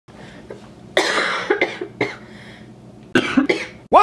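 A young woman coughing, about five short coughs spread over a few seconds.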